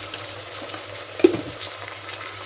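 Onions and ginger-garlic paste sizzling steadily in hot oil in an aluminium pressure cooker. A single sharp knock, the loudest sound, comes about a second and a quarter in, as a utensil or container touches the pot.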